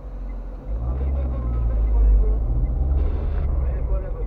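Car engine heard from inside the cabin as the car pulls away and accelerates: a low drone that comes in about two-thirds of a second in, grows louder towards the middle and eases off near the end.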